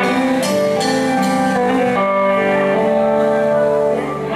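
Live rock band playing an instrumental passage, electric guitars to the fore over keyboard and drums, with a melody of held notes that change about every half second.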